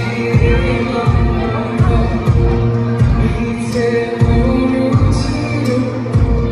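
Loud live amplified band music with a heavy, steady kick-drum beat, about three thumps every two seconds, under sustained instrument tones and a singer's voice.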